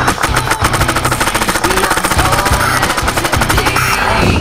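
Custom electro-pneumatic Automag paintball marker with an APE Rampage board firing a rapid, unbroken stream of shots, with background music underneath.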